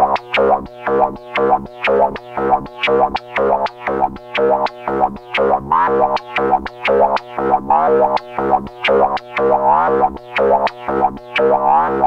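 Korg MS-20 analogue synthesizer playing an envelope-driven loop of short, snappy notes with a sharply resonant filter, repeating about three times a second. The pitch sweeps upward about six seconds in and again near the end, as the envelope knobs that control the pitch bend are turned.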